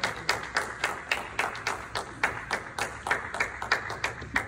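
A small audience applauding, many hands clapping at once, gradually tapering off toward the end.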